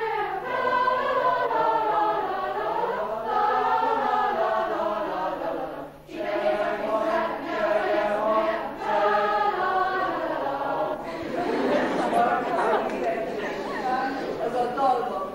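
Large mixed student choir singing a cappella, with a brief breath-break about halfway. About three seconds before the end the singing stops and a noisy crowd sound follows.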